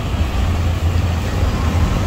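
A motor vehicle engine running steadily, a low hum with road noise over it.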